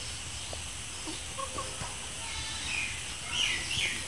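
A bird calling outdoors: a quick run of short, falling chirps in the second half, over a faint steady hiss from eggs frying in shallow oil in a pan.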